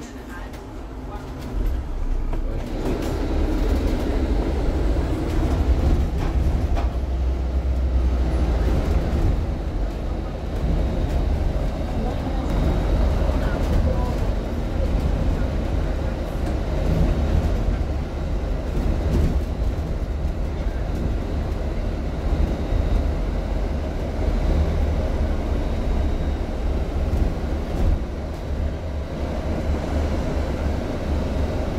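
Engine and road rumble of a London double-decker bus heard inside the cabin from the upper deck, swelling over the first few seconds as the bus pulls away from the lights and then running steadily.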